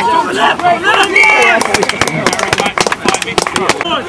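Raised voices shouting outdoors at a rugby match. From about a second and a half in, a rapid run of sharp clicks and knocks takes over.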